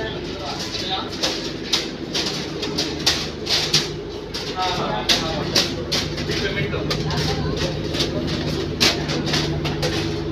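A boat's engine droning steadily at a low pitch, with frequent sharp knocks and clatter on top, and people's voices in the background.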